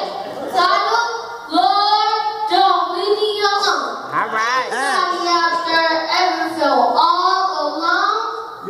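A boy singing unaccompanied into a microphone, holding long drawn-out notes, with a wide wavering bend in pitch about halfway through.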